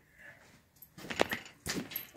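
Two heavy footsteps on a hard floor, with small metallic clinks of a wallet chain jingling, as a person walks up close.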